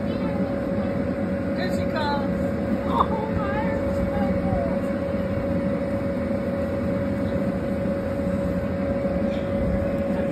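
Inflatable bounce house's electric blower fan running steadily: a continuous low rumble with a constant hum, and a brief knock about three seconds in.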